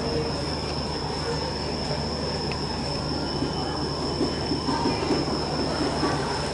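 Steady stadium background noise during the race, with a constant thin high-pitched whine and a low hum underneath, and a few faint distant voices.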